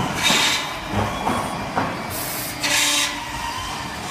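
Automatic PVC window-profile machine working: pneumatic cylinders and clamps clunk at the start, about a second in and just before two seconds. Sharp hisses of exhausting air come near the start and twice around the middle, over a steady machine hum.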